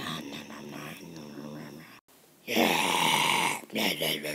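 A child's voice making vocal sound effects: softer vocal sounds at first, then, after a brief cut, a loud, rough vocal noise lasting about a second.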